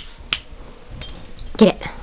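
One sharp click about a third of a second in and a fainter one a second in, then a person's voice urging a dog with "Get it" near the end.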